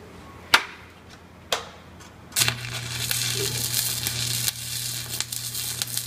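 Two sharp taps, then a stick-welding (shielded metal arc) arc strikes about two and a half seconds in and runs on with a steady crackling hiss over a low hum. The machine is set to about 125 amps for welding 3/8-inch steel plate.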